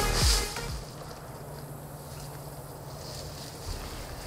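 Background electronic dance music with a thumping beat fades out within the first second, leaving a quiet outdoor background with a faint steady low hum and light wind on the microphone.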